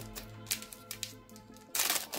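Foil Pokémon Battle Styles booster pack wrapper crinkling in the hands, then ripped open with a loud tearing burst near the end. Background music plays underneath.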